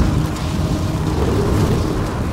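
Cinematic logo-intro sound effect: a loud, steady deep rumble with a hissing, crackling layer over it, like fire and thunder.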